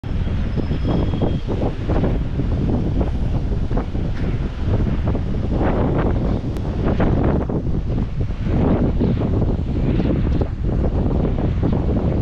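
Wind buffeting a GoPro's microphone: a loud, irregular, gusting low rumble, with surf washing on the shore under it.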